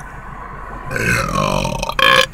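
A man's long belch about a second in, falling in pitch and lasting about a second, over a steady low hum of road and engine noise.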